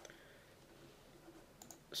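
A few faint computer mouse clicks, just after the start and again near the end, over near-silent room tone.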